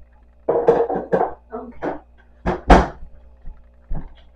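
Kitchen handling noises: a quick run of rustles and clatter, then two sharp knocks in close succession a little before three seconds in, the second the loudest.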